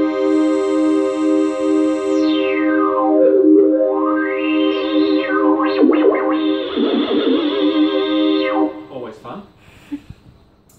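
Homemade keytar synthesizer holding one sustained note while its filter knob is turned: the tone goes dull about two seconds in, opens bright again, and sweeps down and up a few more times before the note stops near the end.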